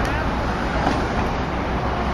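Steady road traffic noise from motorcycles and cars driving along a wide road.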